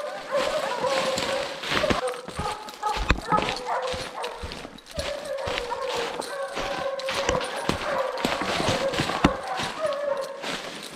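Bear hounds baying in long, drawn-out bawls that go on and on as they hold a bear, with short knocks and crunches of footsteps mixed in.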